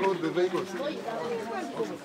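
Background chatter: several people's voices talking over one another, fainter than the narration on either side.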